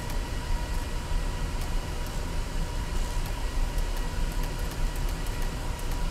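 Steady low machinery drone with a thin, even whine riding on it, the constant background hum of a ship's bridge while underway, with a few faint scattered ticks.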